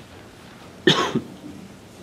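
A person coughing once in a room, a short double burst about a second in.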